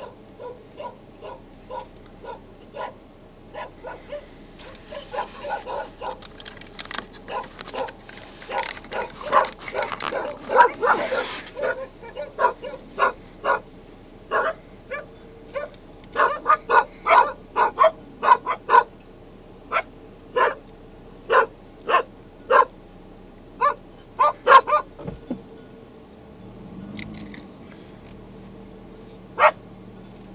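Herding dogs barking repeatedly. The barks come thick and overlapping in the first half, then as single barks about once a second, and stop a few seconds before the end with one last bark.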